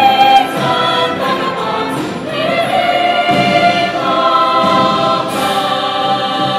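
A choir singing full, held chords in several voice parts, with sharp 's' consonants cutting through now and then.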